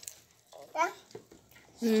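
Speech only: a brief child's vocal sound about three-quarters of a second in, then a woman's voice saying "mm-hmm" near the end.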